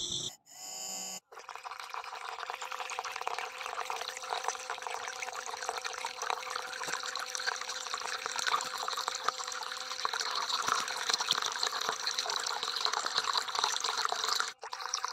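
Water jetting from a small toy-tractor-driven pump's pipe and splashing steadily into a shallow basin, starting about a second in. A faint steady hum from the pump's drive runs underneath.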